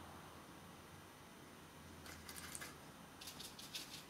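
Near silence with faint light ticks and rustles in two small clusters, about two seconds in and again near the end, from a watercolour brush and paper being handled on the drawing board.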